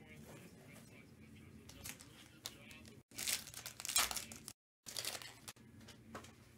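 A foil Topps Chrome Sapphire card pack wrapper being torn open and crinkled, in a few loud rustling bursts from about halfway through.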